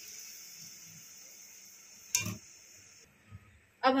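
A fading hiss from the pan of hot tadka as the freshly poured dal settles in it, then a single clink of a metal utensil against the pot about two seconds in.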